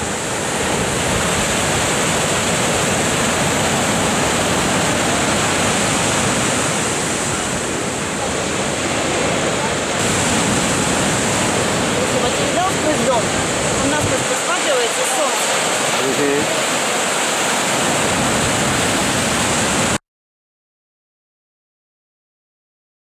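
Ocean surf breaking and rushing over rocks, a loud steady roar of waves that stops abruptly near the end.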